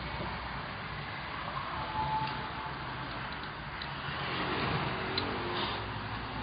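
Steady hum of street traffic in the distance, swelling a little as a vehicle passes about four to five seconds in.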